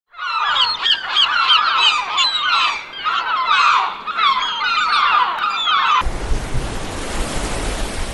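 A flock of gulls calling, many overlapping squawks, for about six seconds; then the calls cut off abruptly and a steady wash of sea waves with a low rumble takes over.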